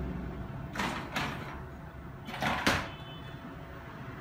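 The lower wire basket of a Bosch SMS25KI00E dishwasher rolling along its rails back into the tub, in two short rattling pushes: one about a second in and one around two and a half seconds.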